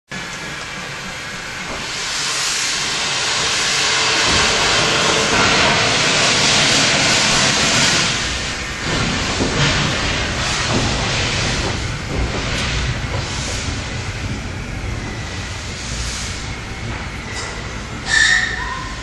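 LBSCR E4 0-6-2 tank steam locomotive letting off steam with a loud, steady hiss, then moving off: from about halfway through, slow, uneven exhaust chuffs sound over continuing steam hiss.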